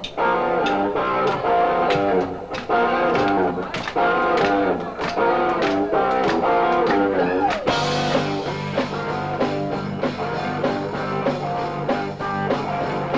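Live rock band starting a song, led by an electric guitar picking a repeated run of notes. About eight seconds in, a steady low note comes in underneath.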